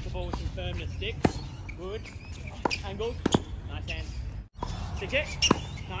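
Tennis ball struck with rackets and bouncing on a hard court during a volley rally: several sharp pocks spaced irregularly, a second or so apart, with voices in the background.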